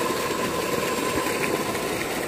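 Electric-motor-driven centrifugal water pump of a solar tube well running steadily, a continuous even hum and rush with no change in speed.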